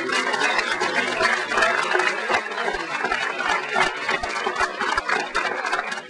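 Audience applauding: a dense, steady run of hand claps that dies away at the very end.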